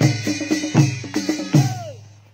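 Nepali panche baja ensemble playing: deep drum beats about every 0.4 seconds over steady clashing cymbals. The music fades out near the end.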